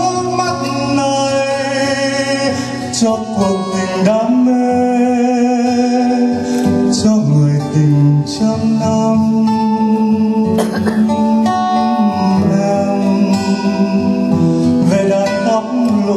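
A steel-string acoustic guitar accompanying a man singing a Vietnamese song into a microphone.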